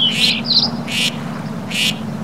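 Ducklings peeping as an added sound effect: several quick high chirps at first, then two short peeps about a second apart.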